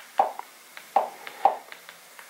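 A steady run of short clicks, about two a second, as the on-screen add-on menu is scrolled step by step with a remote control.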